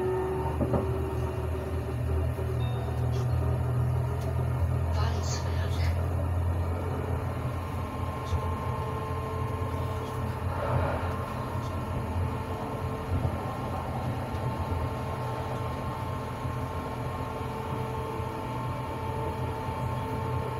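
Tram running along its tracks: a steady low rumble, with a traction-motor whine that rises in pitch at the start as the tram picks up speed and then holds steady.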